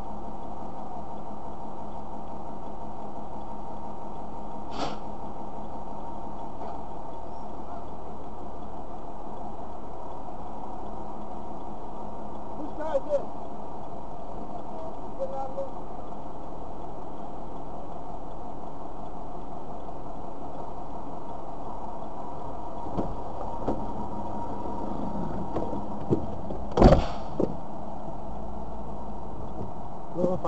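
Car running steadily, heard from inside its cabin, with a few small clicks and one sharp knock near the end.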